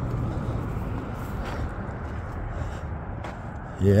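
Steady low rumbling outdoor background noise with a few faint clicks, and a man saying "yep" just before the end.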